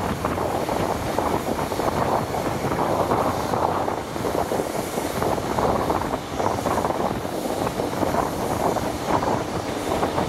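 Wind rushing over a microphone held out of the window of a High Speed Train running at speed, mixed with the train's steady rolling noise on the rails.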